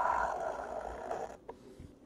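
A blade slitting the seal of a trading-card box: a soft scraping hiss that fades away, then a light click about a second and a half in.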